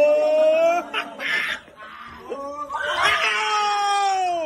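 Students' long drawn-out hollering: one held yell rising slightly and breaking off about a second in, a short hissing shriek, then another long holler near the end that falls in pitch.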